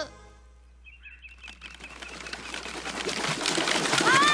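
A brief hush, then a dense flickering, rushing noise that swells steadily louder over the last two and a half seconds, with a few faint short high chirps about a second in.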